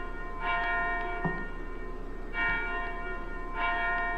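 A bell struck three times at even intervals, each strike ringing on and slowly fading.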